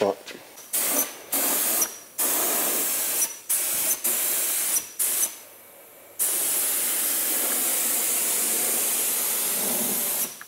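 Gravity-feed compressed-air spray gun spraying paint, a loud hiss in a series of short trigger bursts, then one steady unbroken pass from about six seconds on.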